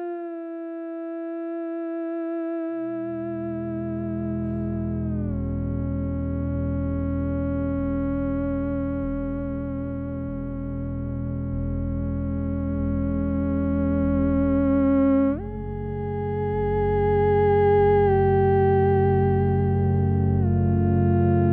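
Theremin playing a slow, held melody with a wavering vibrato, gliding downward over the first few seconds and leaping up to a higher note about 15 seconds in. A low, sustained drone chord comes in underneath about 3 seconds in and holds.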